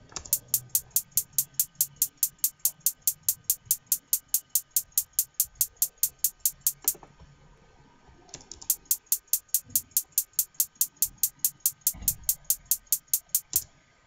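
A single sharp, hi-hat-like percussion sample looping in FL Studio's step sequencer, an even run of hits about six a second. It stops about seven seconds in and starts again about a second and a half later, running until just before the end.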